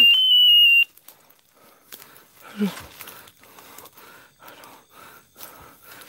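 A loud, shrill, high-pitched tone holds steady for just under a second and cuts off suddenly. Then footsteps crunch through dry leaf litter at a walking pace, about two a second.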